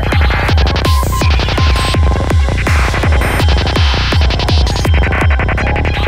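Dark psytrance at 165 BPM: a steady four-on-the-floor kick drum with a rolling bassline between the beats and choppy high synth sounds layered over it.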